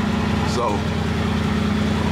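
Mercedes-AMG GT's twin-turbo V8 idling steadily, heard from inside the cabin as an even, unchanging hum.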